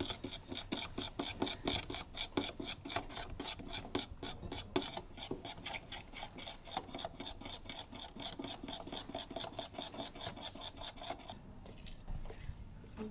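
A utensil stirring batter in a glass mixing bowl, scraping against the glass in quick, even strokes, about five a second. The stirring stops about a second before the end.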